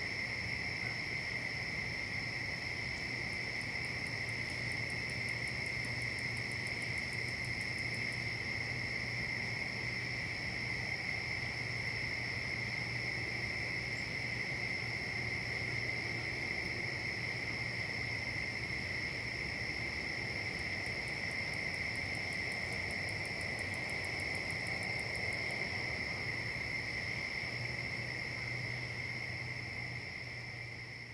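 Evening chorus of crickets and other insects: a steady, unbroken trilling at two pitches. A higher, rapidly pulsing insect call joins in twice.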